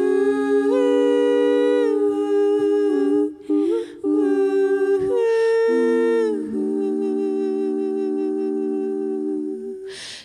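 Three women's voices humming sustained chords in close harmony, unaccompanied. Each chord is held for a second or two before the voices move together to the next, with brief breaths between phrases, and the last chord fades near the end.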